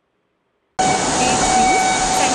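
Silence, then less than a second in a loud, steady noisy din starts abruptly, with a held hum-like tone running through it and faint, indistinct voices.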